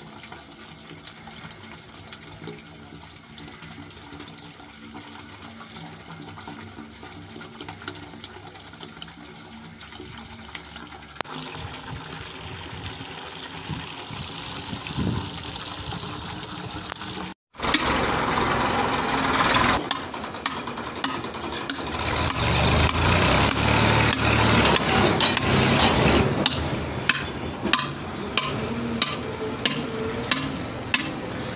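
Water running in a steel borewell casing pipe, with a steady low hum under it. After a break, a louder rushing noise, and in the last few seconds a hammer striking the steel casing pipe repeatedly, about two blows a second.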